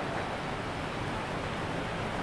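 Steady background hiss with a low rumble underneath, with no distinct events: the room tone of the workshop.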